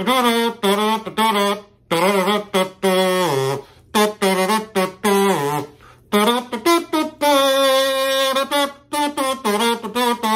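Homemade comb kazoo, wax paper taped over a plastic comb's teeth, buzzing as a string of short hummed notes is sung into it, some sliding in pitch, with one long held note late on. The buzz is the wax paper vibrating against the comb's teeth.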